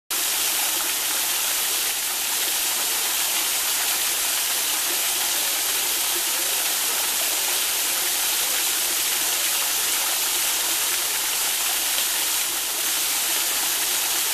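Small stream of water running and splashing over a rock ledge: a steady, even rush of water.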